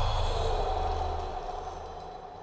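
Fading tail of a sudden cinematic impact hit at the start of a soundtrack: a low rumble that dies away in the first second and a half, and a held mid-pitched tone slowly fading.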